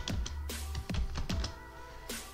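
Key clicks from typing on a computer keyboard, over background electronic music with a steady low bass and a beat about twice a second.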